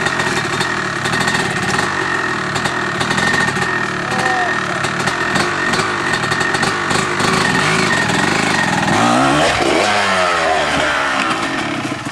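Dirt bike engines running, with one revving up in rising sweeps about three-quarters of the way through as its rider tackles a log across the trail.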